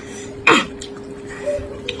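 A woman's single short throat-clearing cough about half a second in, while eating.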